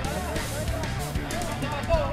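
Spectators' overlapping background chatter with music playing at the same time.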